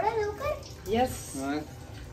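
Speech: a voice talking in short phrases, with a pause in the middle.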